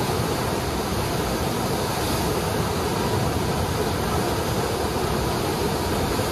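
Loud, steady rush of the Eisbach standing river wave: fast-flowing water breaking into churning white water, unchanging throughout.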